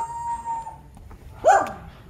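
A dog howling: one long held note, then a shorter cry that rises and falls about a second and a half in.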